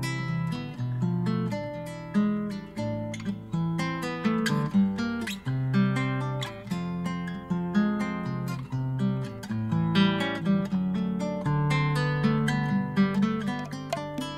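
Instrumental song intro on acoustic guitar: a run of quickly plucked notes over a moving bass line.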